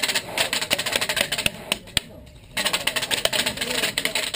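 Rapid airsoft fire: dense runs of fast clicking and ticking, broken by a half-second lull about two seconds in.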